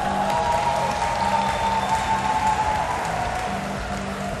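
Background music with applause and cheering that swells after a rings dismount and fades over the next few seconds.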